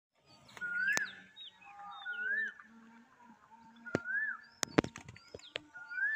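Birds calling outdoors: one repeats a short whistled note that rises and falls, about every one and a half to two seconds, with higher short chirps in between. A few sharp clicks cut in, the loudest a little before the end.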